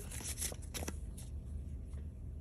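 Paper scratch-off lottery tickets being handled: a few light, quick rustles and clicks over a low, steady background hum.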